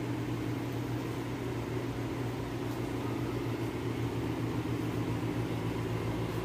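Steady low machinery hum filling a shop interior: a constant droning tone with a few higher overtones over a soft even hiss, typical of running air-conditioning or refrigeration equipment.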